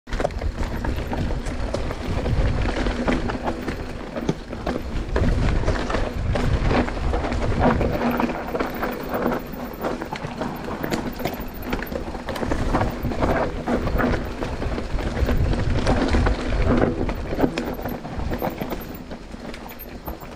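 Mountain bike riding down a rough dirt trail: tyres rolling over dirt and leaf litter, with frequent knocks and rattles from the bike over bumps and a heavy rumble of wind and jolts on the handlebar-mounted camera microphone.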